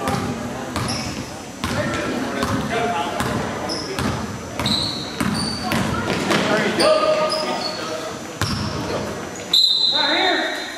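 Basketball game on a gym's hardwood court: a ball bouncing, and sneakers squeaking several times, the loudest squeak near the end. Voices of players and onlookers echo in the hall.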